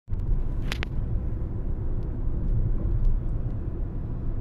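Inside a moving car: a steady low rumble of engine and tyre noise while driving. Two short clicks just under a second in.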